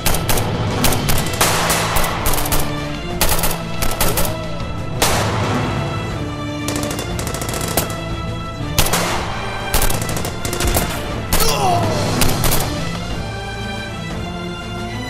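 Gunfire from rifles in a shootout: repeated rapid bursts of shots with short gaps between them, over steady dramatic background music.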